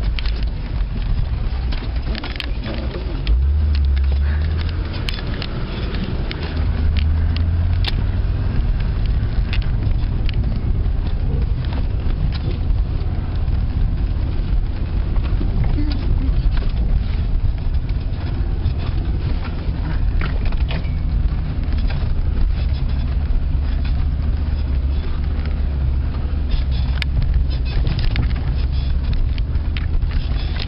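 Off-road 4x4 driving a rough track, heard from inside the cab: a steady low engine and drivetrain rumble, with scattered knocks and rattles from the bumpy ground. The rumble swells about three seconds in and again from about seven seconds in.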